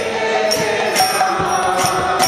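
Bengali Vaishnava devotional bhajan: a man's amplified solo singing voice with a hand drum beaten with a stick, and sharp ringing percussion strikes about twice a second.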